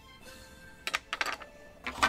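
Light clicks and taps of small plastic toy pieces being handled and set down on a table, a few about a second in and another near the end, over faint background music.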